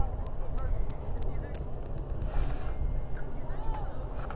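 Wind rumbling on the microphone, with faint distant voices of spectators and players and scattered small ticks.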